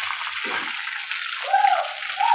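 Chicken pieces frying in hot oil in a steel kadhai: a steady sizzle. A brief higher-pitched sound cuts in about one and a half seconds in.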